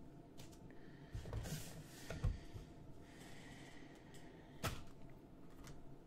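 Faint handling sounds of a trading card and card packs on a tabletop mat: soft rustles and a couple of light taps, with one sharper tap a little before the end.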